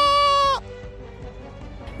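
A man's voice holding one long, high, steady note in a mock wail, cut off about half a second in. Only faint background follows.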